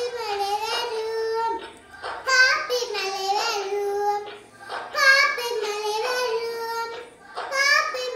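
A young girl singing a Tamil song solo, in phrases of two to three seconds with short breaks between, each phrase ending on a held note.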